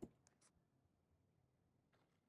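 Near silence: room tone, with a few faint clicks in the first half second.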